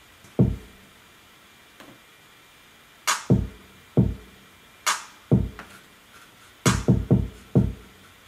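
Programmed hip-hop drum pattern playing on studio monitors: deep electronic kick drum hits with a sharp clap, and no other instruments. A single kick comes early; after a gap of about two and a half seconds the kicks and claps run as a sparse, syncopated pattern, with claps about every second and three-quarters.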